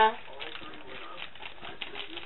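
Foil yeast sachet crinkling and rustling in the hands as it is emptied into a bowl of flour, a steady rustle with many small ticks.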